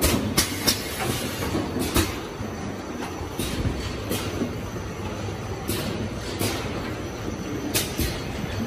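Automatic bottle filling and capping line running: a steady mechanical rumble from the conveyor and machinery, broken by about ten irregular sharp clacks from the jugs and machine parts.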